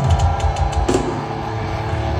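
Heavy metal band playing live through a loud PA: sustained distorted guitar rings over heavy bass, with two sharp drum hits, one at the start and one about a second in.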